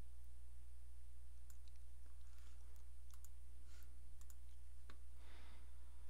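A few faint, scattered clicks of a computer mouse, over a steady low electrical hum.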